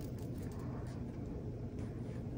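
Faint rustling of a clear planner sticker being pressed and smoothed onto a paper planner page by fingertips, over a steady low room hum.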